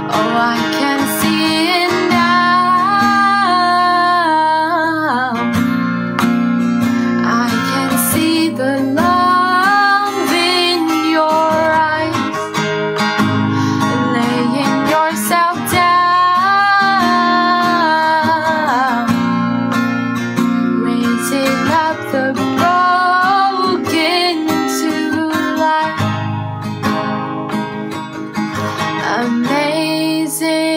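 Worship song played on a strummed acoustic guitar, with a female voice carrying the melody.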